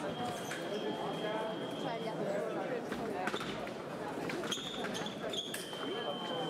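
Electronic fencing scoring apparatus giving a steady high tone, once for about two seconds at the start and again from near the end as a touch registers. Under it is a hall's background chatter, with sharp clicks and knocks in between.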